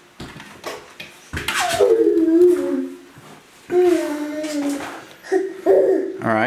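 A small child's voice: two drawn-out vocal sounds, each a second or more long and falling a little in pitch, with a few faint clicks before them.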